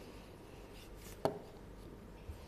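A single sharp knock about a second in, over quiet room tone.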